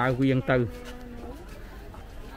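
A voice speaking briefly, then a faint steady buzzing hum for about half a second over low background noise.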